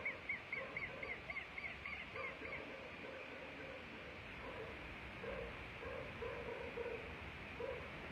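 Southern lapwing (quero-quero) giving a rapid run of sharp, repeated alarm calls, about four a second, which stop a little under three seconds in. These are the distressed calls of an adult whose chick is trapped in a storm drain.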